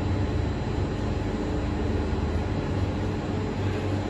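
A steady low hum and rumble of room background noise, unchanging throughout, with no speech.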